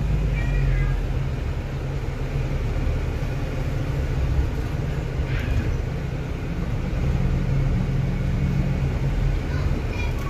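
Double-decker bus heard from the upper deck while driving: a steady low engine and road rumble, with faint voices in the background.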